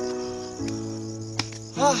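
Background music with held notes that change in steps, a few sharp ticks and a steady high-pitched tone above, with a short voiced "ha" near the end.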